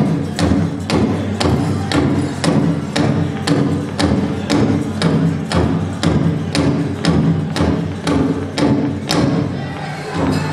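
Powwow drum group singing over a steady beat on a shared big drum, about two strikes a second, accompanying fancy shawl dancing.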